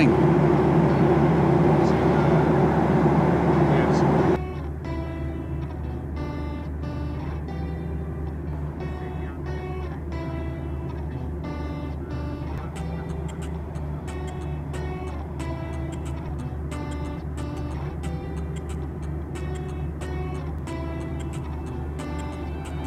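Steady cabin noise of a Boeing 737 at cruise, a deep rumble of engines and airflow, cutting off abruptly about four seconds in. After that comes background music: repeated plucked notes and light ticking percussion over a low hum.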